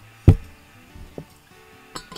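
One loud, sharp thump about a quarter second in, then a lighter click about a second later, as a glass beer bottle is handled on the table. Faint background music runs underneath.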